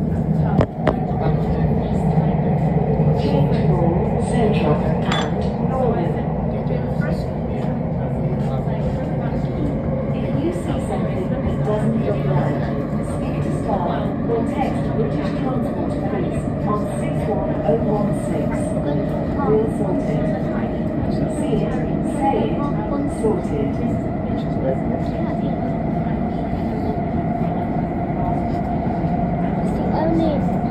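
Elizabeth line Class 345 train running through a tunnel, heard from inside the carriage: a steady rumble with a motor hum and a whine. A single knock comes about a second in.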